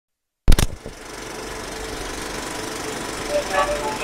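A few sharp clicks, then a steady, rapidly pulsing mechanical rumble. A voice begins near the end.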